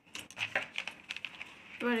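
Pages of a paper workbook being turned and smoothed flat by hand: light papery rustles and small sharp ticks, with a voice starting to speak near the end.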